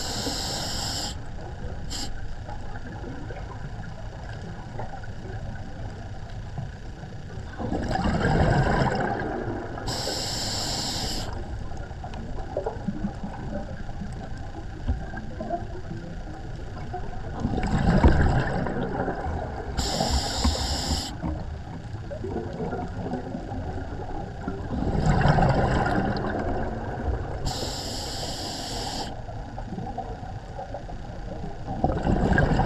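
A scuba diver breathing through a regulator underwater. There is a hiss of inhalation at the start, then three slow breaths about eight to nine seconds apart. Each breath is a low rumble of exhaled bubbles followed a couple of seconds later by the high hiss of the next inhalation, over a steady underwater wash.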